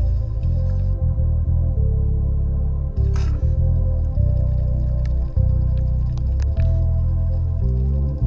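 Background ambient music: sustained tones over a steady bass, changing chord every second or so, with a short burst of noise about three seconds in.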